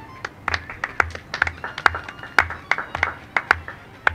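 A small audience clapping, a scatter of sharp, uneven hand claps from a few people that stops near the end.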